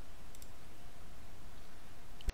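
Steady microphone hiss from a desk recording setup, with a quick pair of faint computer mouse clicks about half a second in.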